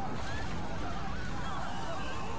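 A giant monster's processed, wavering cry, over a steady low rumble.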